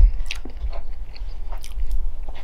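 Close-miked chewing of a mouthful of mashed potato with gravy: soft, wet mouth clicks and smacks, scattered and irregular, over a steady low hum.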